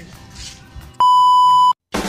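A loud, steady electronic beep of one pitch, under a second long, starting about halfway in and cutting off suddenly, after a quieter first second.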